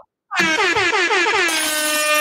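Air horn sound effect played over the stream: a loud, rapidly pulsing blast that slides down in pitch, then settles into a steady held note about halfway through.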